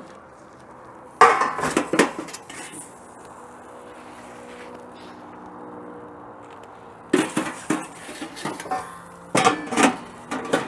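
Metal clattering and scraping from a gas broiler's metal door and a metal pizza peel as the pizza is slid out and the door is shut again. The knocks come in three clusters, about a second in, around seven seconds in and near the end, over a faint steady hum.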